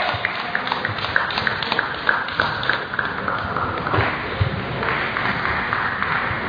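Busy indoor sports hall: a general murmur with a quick, fairly even run of short, sharp taps, about four a second, through the first few seconds.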